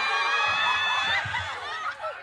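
Several people laughing and shrieking in high voices, dying down a little past the middle.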